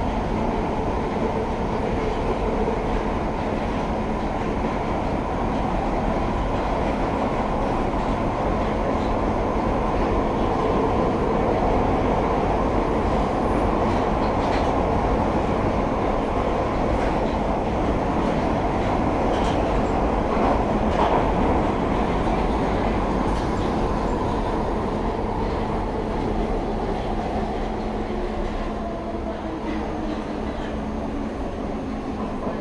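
London Underground Piccadilly line 1973 Tube Stock train running at speed through a tunnel, heard from inside the carriage: a steady, loud rumble of wheels on rail and traction motors, easing off slightly near the end.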